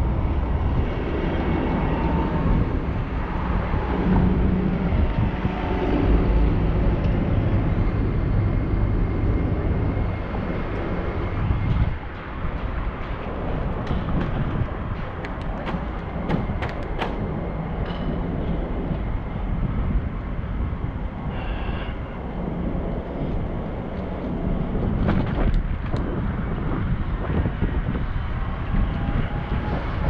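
Wind rushing over a bicycle-mounted camera with tyre noise on the pavement while riding down a street, with a few sharp clicks about halfway through.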